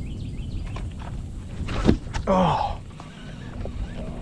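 Steady low rumble on the microphone with one sharp knock about two seconds in, the loudest sound, followed by a short low falling sound.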